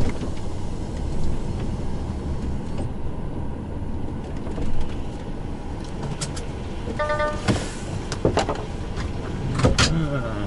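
Truck cab interior: the diesel engine runs with a steady low rumble as the truck rolls slowly forward. About seven seconds in there is a short electronic beep, followed by a few sharp clicks near the end.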